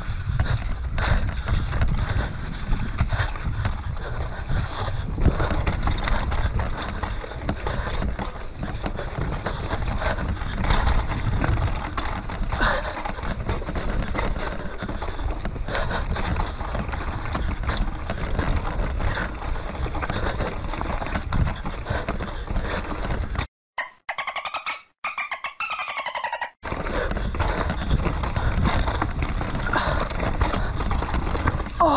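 Mountain bike running fast down a dirt forest trail, heard from a camera on the rider: a steady rumble of tyres over dirt and leaves with constant clattering and rattling from the bike, and wind on the microphone. About three-quarters of the way through, the sound cuts out in several short gaps for about three seconds.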